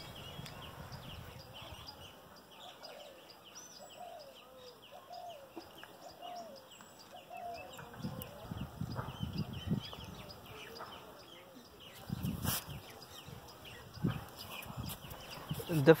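Quiet outdoor background with small birds chirping over and over, faint distant voices, a few dull bumps from wire handling, and one sharp click about three quarters of the way through.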